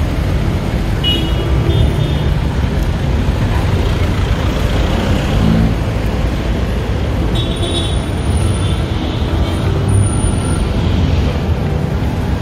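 Busy downtown street traffic: a steady din of passing cars, vans and motorcycle tricycles.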